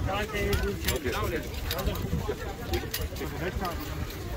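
People talking indistinctly over a steady low outdoor rumble, with scattered light clicks.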